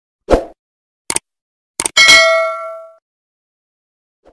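A string of edited sound effects: a low thump, two short sharp clicks, then a bright metallic ding that rings for about a second and fades.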